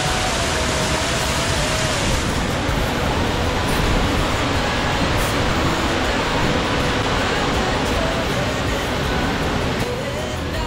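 A tiered waterfall rushing and splashing down rock steps into a pool: a loud, steady rush of water with no breaks.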